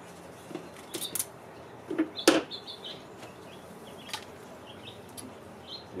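Scissors snipping through a piece of red reflective tape, with a few sharp clicks and light handling noises on a tabletop; the loudest click comes a little over two seconds in.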